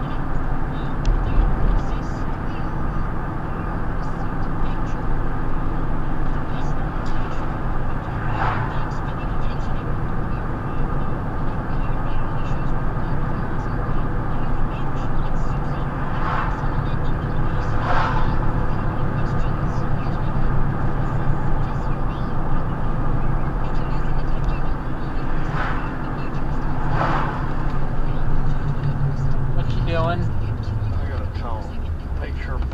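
Steady road and engine noise inside a moving car's cabin at about 35 mph, with a muffled, unintelligible voice underneath.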